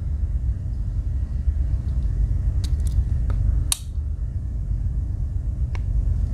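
Steady low rumble of room noise, with a few small sharp clicks from the back-layer tools of a Victorinox Cyber Tool 41 Swiss Army knife being closed and opened against their springs. The clicks fall in the middle, the sharpest a little past halfway, with one more near the end.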